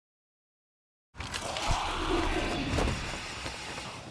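Silent for about the first second, then a film's background effects cut in: dense rumbling noise with two heavy thuds, the first and loudest soon after it starts and the second about a second later.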